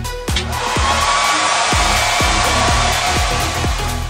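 A steady rushing hiss that starts just after the beginning and stops near the end, laid over electronic dance music with a regular beat.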